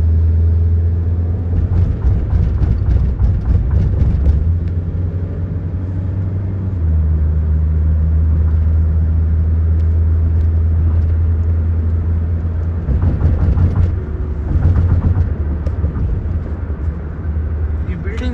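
Steady low drone inside a moving car's cabin: engine and road noise while driving. It gets rougher and louder for a few seconds near the start and again a few seconds before the end.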